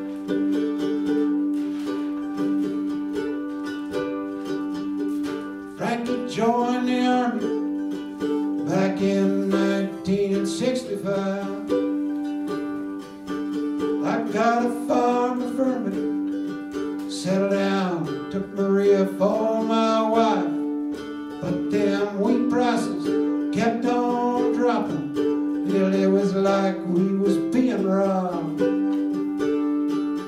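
Instrumental break in a solo acoustic folk song: a small acoustic string instrument strummed with steady held chords, and a melody line that bends and wavers in pitch over it in three long phrases.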